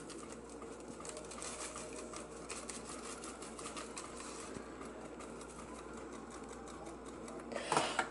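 Dry taco seasoning being shaken from its packet onto raw chicken breasts in a slow cooker: a fine, rapid ticking of falling granules that thins out about halfway through, over a low steady hum.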